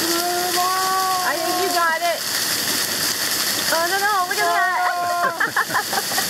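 Waterfall water pouring and splattering steadily onto hand-held plastic water bottles being filled under the falls. A person's voice makes two long drawn-out calls over it, one at the start and one past the middle.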